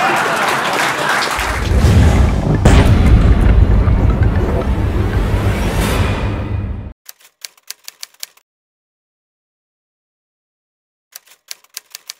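Logo-sting sound effect: a loud, heavy deep-bass rumble with a sharp hit about two and a half seconds in, cutting off suddenly near seven seconds. After silence come two short runs of rapid clicks.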